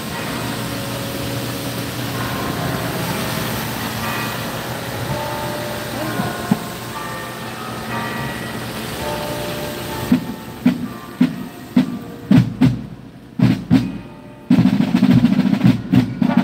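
Steady street noise with faint distant voices. About ten seconds in, a marching band's drums start beating single strokes, and a few seconds later the full brass band of trombones and trumpets comes in loudly.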